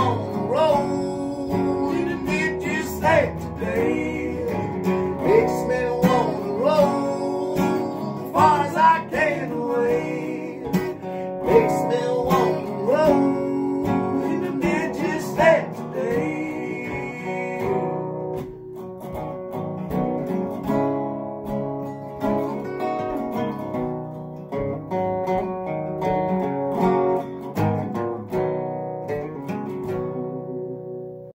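Two guitars playing an instrumental outro: an acoustic guitar strumming and a resonator guitar picking lead. Through the first half the lead has many sliding, bending notes; then both settle into steadier picking.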